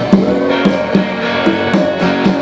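Small band playing instrumental music live: guitars over bass, with percussion and a cymbal played with a wire brush. Notes are struck about twice a second, with a strong accent just after the start.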